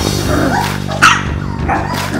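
Husky puppy yipping, with its sharpest, loudest yelp about a second in, over swing band music.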